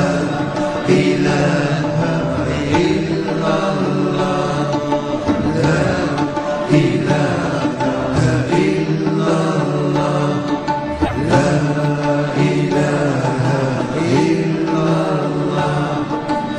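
Music soundtrack of chanting: a voice holding long notes that bend in pitch, with short breaks between phrases.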